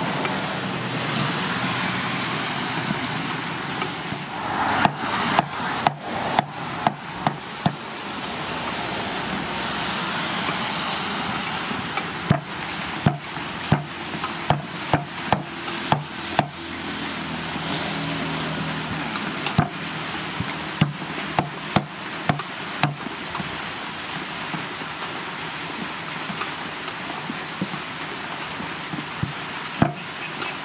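A hand-forged steel kitchen axe (cleaver) chopping down onto a round wooden chopping board, cutting green stalks and a round green fruit: runs of sharp knocks about two a second, with pauses between the runs, over a steady background hiss.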